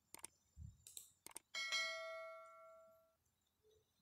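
Subscribe-button animation sound effect: a few quick mouse clicks, then a single notification-bell ding about a second and a half in that rings out for about a second and a half.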